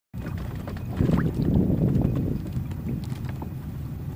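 Wind rumbling on the microphone over water lapping against a sailing kayak's hull. The rumble swells about a second in and eases off, with a few faint ticks.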